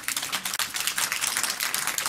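Audience applause: many people clapping at once.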